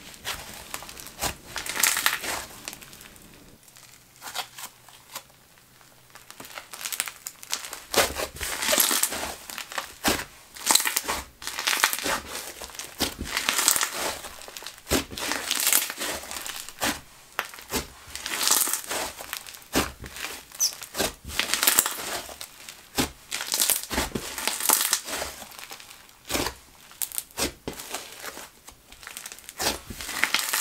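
Crunchy green slime being stretched, folded and squeezed by hand, giving off irregular crackles, crunches and sizzles, with a quieter spell a few seconds in.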